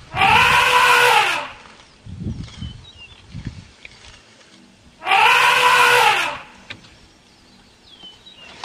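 African elephant trumpeting twice, about five seconds apart. Each loud call lasts a little over a second and rises then falls in pitch.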